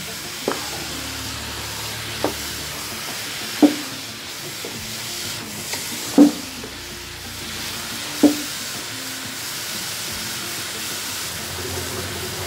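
Grated carrots sizzling steadily as they roast in ghee in a metal pot, stirred with a wooden spoon that knocks against the pot several times, the loudest knock about six seconds in.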